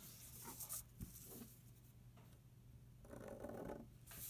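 Faint pen strokes scratching on paper and a plastic ruler being shifted across the sheet, with a couple of light taps about a second in.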